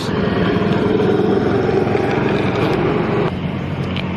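A motor vehicle engine running close by, a steady pulsing drone that drops away a little over three seconds in.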